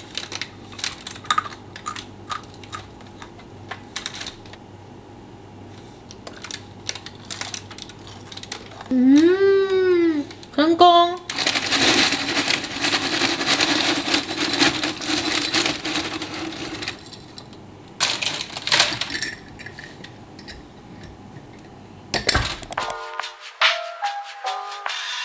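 Crisp clusters of home-baked granola crackling and clicking as they are broken apart on a parchment-lined tray, with a short hummed voice sound about nine seconds in. Then a dense rattle of granola pouring off the parchment into a glass jar for several seconds, followed by a few more clicks.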